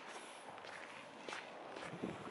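Faint footsteps on a sandy beach, four steps at a steady walking pace.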